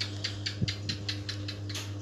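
Rapid run of small clicks from typing on a computer keyboard, about six a second, over a steady low electrical hum.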